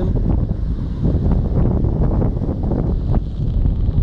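Loud wind rumble buffeting the phone's microphone, over the rush of a fast mountain river running over rocks.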